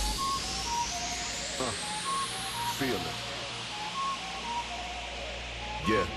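Electronic dance music in a breakdown: the kick drum drops out and a rising noise sweep climbs until about three seconds in, over a held bass note and short repeated synth notes, with a couple of brief vocal snippets.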